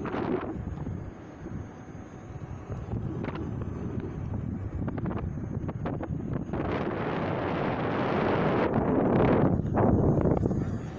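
Wind buffeting the microphone of a camera carried on a moving electric unicycle, growing louder over the last few seconds of the ride, with a few faint clicks.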